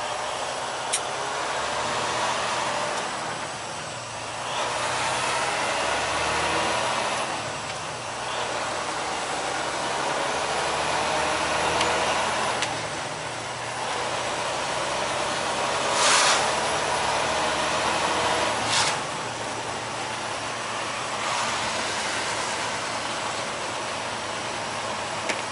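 Semi truck driving on a wet road, heard inside the cab: a steady engine drone under tyre and road hiss that swells and eases every few seconds. Two short sharp clicks come about two-thirds of the way through.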